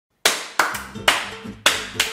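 A person clapping their hands: four sharp claps at uneven intervals, each ringing out briefly, with another right at the end.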